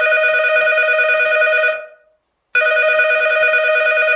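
Telephone ringing twice, each ring a trilling tone about two seconds long with a short pause between.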